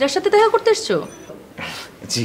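Speech: a woman talking in a high-pitched, emphatic voice, with no other sound.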